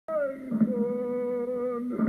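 A person's voice humming one long held note, after a brief higher start, breaking off shortly before the end.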